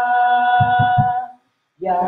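A man singing a long held note a cappella into a microphone, with three low thumps under it about half a second in. The sound cuts out completely for a moment near the end, then the singing comes back.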